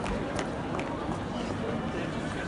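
Busy pedestrian street ambience, with indistinct voices and a few short sharp clicks in the first second or so.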